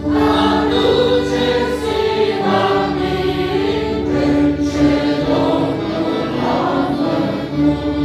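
A congregation of men and women singing a hymn together in many voices, sustained and unbroken.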